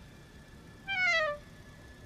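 A single short, high-pitched, voice-like cry that falls in pitch, about a second in, over a faint steady background.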